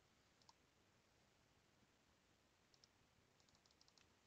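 Near silence with a few faint computer clicks: a pair about half a second in, another pair near three seconds, and a quick run of small clicks near the end.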